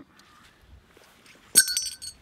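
A single sharp metallic clink with a brief ring about one and a half seconds in, from a Lee filter holder and adapter ring being handled.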